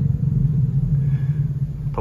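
Steady low rumble of a running motor, one even pitch throughout.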